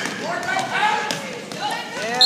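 Sneakers squeaking on a gym floor in many short rising-and-falling chirps, with a basketball bouncing and spectators talking.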